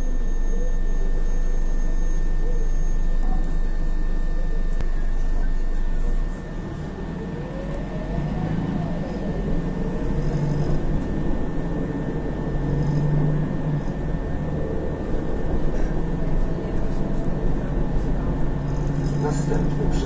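Interior noise of an Isuzu Novociti Life city bus driving: engine and drivetrain running, with a steady hum for the first six or so seconds that drops off suddenly, then engine noise that rises and falls in pitch as the bus moves off.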